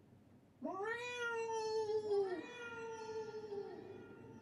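A cartoon cat's long, drawn-out meow, rising at the start and then held, followed by a second meow that overlaps it and dies away. It sounds like the call coming back as an echo off the mountain.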